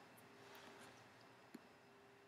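Near silence: faint room tone with a faint steady hum and a single small click about one and a half seconds in.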